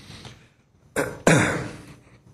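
A man coughing to clear his throat at a podium microphone: two harsh bursts close together about a second in, the second louder and falling in pitch, after a faint breath.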